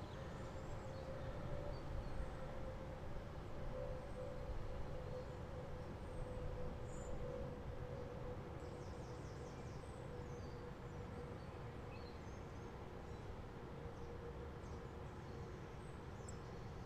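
Steady outdoor background noise: a constant low rumble with a faint steady hum running through it, and a few faint high chirps.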